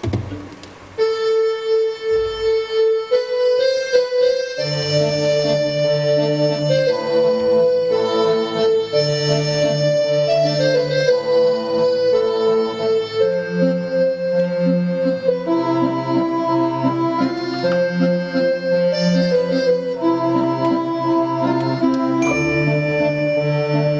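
Small orchestra of strings and a keyboard playing slow, sustained chords. A single held note starts about a second in, and a low bass line joins a few seconds later.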